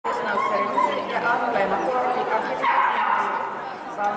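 A dog barking and yipping over people chattering.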